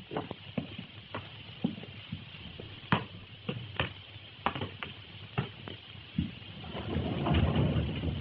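Hiss and crackle of an early sound film's soundtrack, with scattered sharp clicks. A louder, rough noise swells up in the last second or so.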